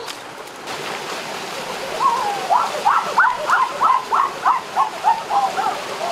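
Stream water running over rocks at a small waterfall, a steady hiss throughout. About two seconds in, a person's voice lets out a rapid run of about a dozen short, high cries, about three a second, louder than the water.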